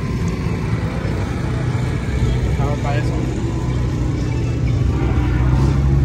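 A car engine idling: a steady low hum that grows slightly louder toward the end.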